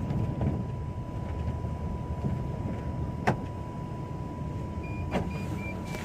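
Cabin noise inside an Iveco Daily route minibus on the move: steady engine and road rumble with a thin constant whine, and a sharp knock a little past halfway, then a lighter one near the end.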